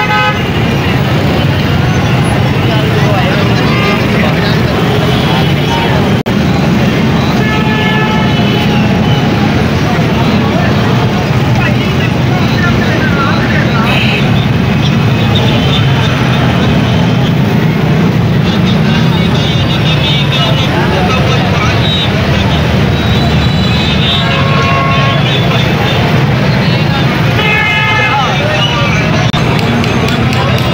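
Busy street traffic of motorcycles and auto-rickshaws running steadily, with vehicle horns honking several times, twice near the end, over the chatter of passers-by.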